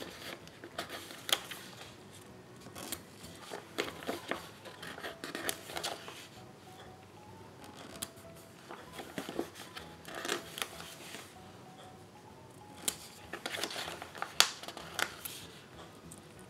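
Paper planner sticker sheets being handled: the sheets slide and rustle, and stickers are peeled from their backing and pressed onto the planner pages, in irregular bursts of soft clicks and rustles.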